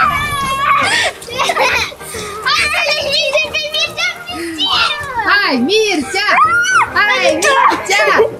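Children laughing and shouting excitedly as they play, over background music.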